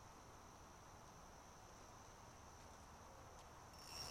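Near silence, with the faint, steady, high-pitched drone of insects.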